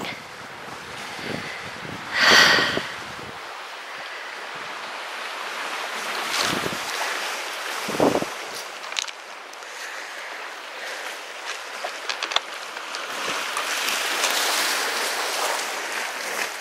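Sea surf washing on a pebble shore, with wind on the microphone and a louder rush about two seconds in. A few short clicks of stones can be heard later.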